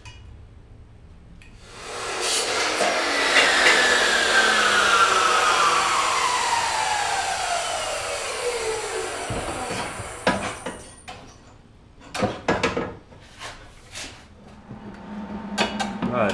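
Grinder trimming the end of a steel chassis tube: loud grinding starts about two seconds in, then a whine falls steadily in pitch for several seconds as the wheel spins down. A few sharp knocks follow near the end.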